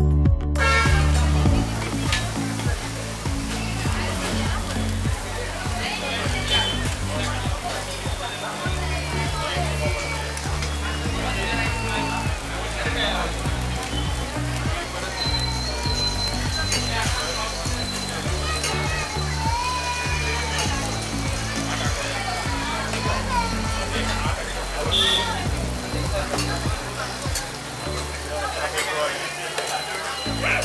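Background music with a bass line, laid over the sizzle of dosas cooking on a flat iron griddle (tawa) and voices; a thin steady high tone comes in about halfway.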